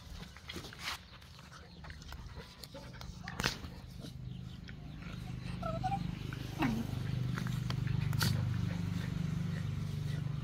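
A mother dog and her puppy play-fighting, with low growling that builds and grows louder through the second half. Short high whines come around the middle, and a few sharp knocks of scuffling are scattered through, the loudest about a third of the way in.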